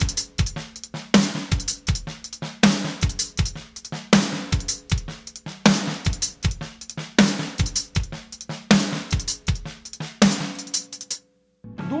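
Acoustic drum kit playing a repeating linear groove built on right-right-left double strokes with snare ghost notes, the snare on beat three and bass drum at the start and end of the bar. A loud accent marks each repeat about every second and a half, and the playing stops shortly before the end.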